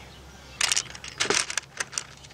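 Plastic K'NEX rods clicking and rattling against each other and the wooden cigar box as they are picked out by hand, in a few short bursts.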